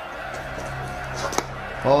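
Cricket match broadcast audio with music underneath: a single sharp crack about one and a half seconds in, a bat striking the ball as a shot is played, and a commentator starts calling the shot near the end.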